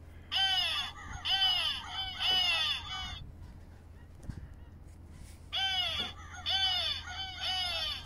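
Electronic crow-decoy bird scarer playing recorded crow caws: two bursts of about four harsh caws each, a few seconds apart.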